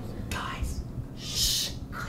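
A person whispering: a faint breathy sound, then a short hushing hiss like a whispered "shh" about a second and a half in.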